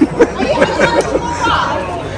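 Indistinct chatter: several people talking close by at once.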